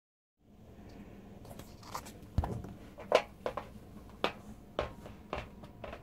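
A run of irregular clicks and light knocks, about half a dozen, handling noise as a person settles his headphones and moves about at a microphone, over a faint steady hum.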